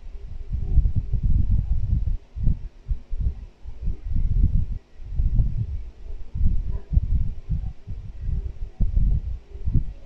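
Irregular low thumps and rumbling from a phone being handled while someone types on its touchscreen, picked up close on its own microphone.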